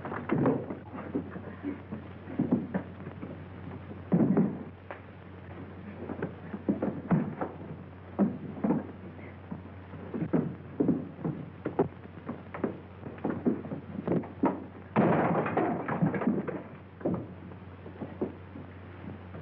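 A string of irregular knocks and thumps over a steady low hum on an old film soundtrack, with a louder, denser cluster of impacts about 15 seconds in.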